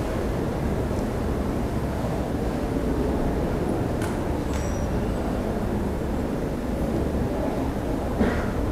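Steady low rumble of room noise in a large hall, with a faint click about four seconds in.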